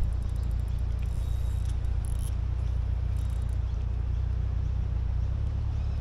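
Wind rumbling steadily on the microphone, with faint fast ticking from the spinning reel near the start as the line is worked against a hooked fish.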